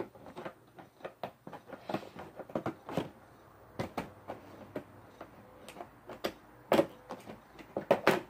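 Tape being picked at and pulled off a toy figure box, with irregular crinkles, scrapes and clicks of the packaging, the loudest a couple of sharp ones about two-thirds of the way in.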